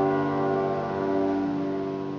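Grand piano chord held and ringing, slowly fading away, with a quiet shift in the low notes near the end.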